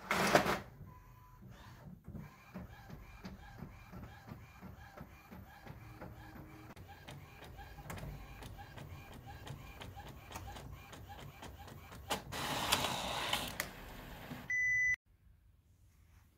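Epson WorkForce inkjet printer printing a sheet of cardstock. A short rustle of paper at the start, then a long run of fast faint ticks as the print carriage works. A louder paper-feed rustle comes about 12 s in, then a short beep just before the sound cuts off.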